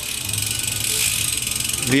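Bicycle freewheel pawls ratcheting in a fast, even run of fine clicks as the cranks are turned backwards.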